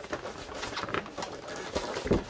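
Handling noise from packing an accordion: irregular rustling and light knocks as white shipping supports are pushed into place around the instrument.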